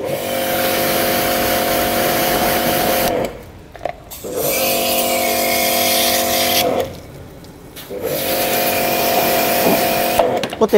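Portable electric pressure washer running in three spells of steady motor-pump hum with the hiss of its water jet, stopping briefly in between as the trigger is let go.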